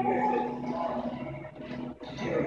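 Background music with held, sung notes, mixed with indistinct voices.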